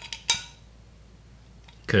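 A metal screw lid coming off a small glass jar, with one sharp clink about a third of a second in.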